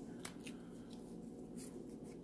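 Faint handling of paper stickers: a few brief rustles and scrapes.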